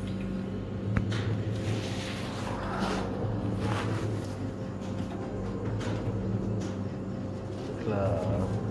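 Gaming-arcade room sound around slot machines: a steady low hum with indistinct background voices and a few short clicks.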